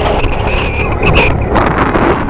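Wind buffeting the microphone at the water's edge: a loud, gusting rumble with a hiss over it.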